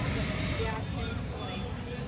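A hiss from a draw on an electronic cigarette (vape), cutting off about three-quarters of a second in, with a low rumble of background noise under it.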